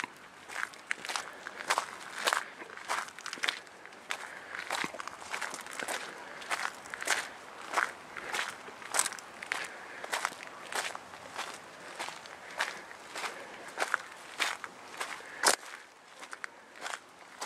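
Footsteps crunching on the loose gravel and crushed stone of a former railway track bed, at a steady walking pace of about two steps a second.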